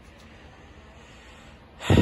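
Quiet room tone, then near the end a man's short, sharp breath, loud on the microphone, just before he speaks again.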